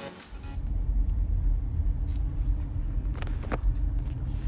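Steady low rumble of a car's road and engine noise heard from inside the moving car. Background music cuts out just as it starts, and a few faint knocks come through near the middle.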